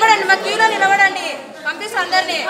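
Speech only: people talking in a room, voices overlapping as chatter.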